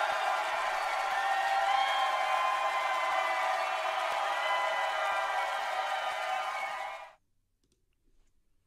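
Studio audience screaming and cheering at the end of a K-pop stage performance, a dense high-pitched wall of many voices that cuts off suddenly about seven seconds in.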